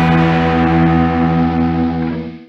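Final distorted electric guitar chord of a street punk song, with bass, held and left ringing after the drums stop. It begins to fade near the end as the song closes.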